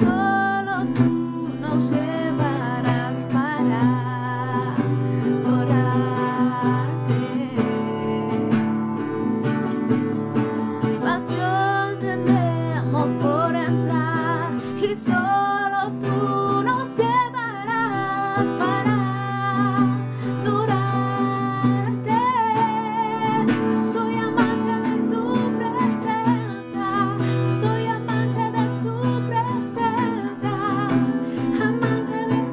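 D'Andre cutaway acoustic guitar strummed and picked in steady chords, with a singing voice carrying a wavering melody above it.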